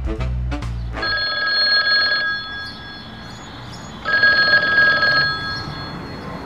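Music cuts off about a second in, then a phone rings twice, each ring about a second long with a fast trilling tone.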